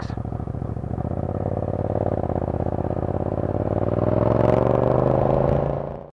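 Yamaha FZ-07 parallel-twin motorcycle engine with an Akrapovic titanium exhaust, running under way with engine speed climbing gradually in the second half, then fading out at the very end.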